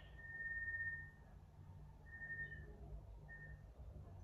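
A faint, steady, high whistling tone that holds one pitch. It sounds three times: a long stretch near the start, a shorter one about two seconds in, and a brief one near the end.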